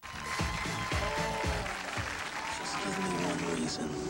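Studio audience applauding and cheering over music, starting suddenly at full strength, with whoops rising and falling above the clapping.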